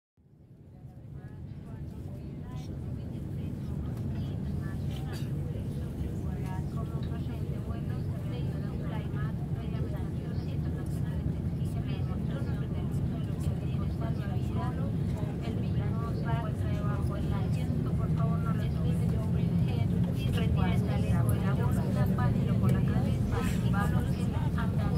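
Field recording fading in over the first few seconds: indistinct voices talking over a steady low rumble.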